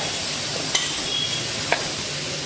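Hand and spoon working damp rice flour in a metal bowl: a steady gritty rustle of stirring, with two light clicks about a second apart.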